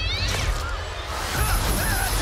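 A cartoon cat yowling and screeching as it scrambles, with a crash as a ramen bowl is knocked over, over background music. Shrill wavering cries come at the start and again in the second half.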